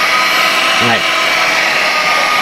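Hutt C6 window-cleaning robot running on a glass pane: its suction fan gives a steady, even whine with a few held tones, keeping the robot stuck to the glass.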